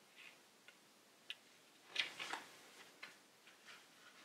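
Faint, irregular light clicks and taps from small desk-work handling, with a louder cluster of three about two seconds in.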